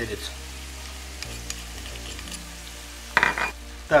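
Diced turkey and vegetables frying in a pan with a soft, steady sizzle as chopped chili pepper is added, with a short louder sound about three seconds in.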